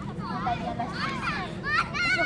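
Several young girls' voices shouting and calling out to one another during an outdoor ball game, overlapping and indistinct, with a louder cluster of calls near the end.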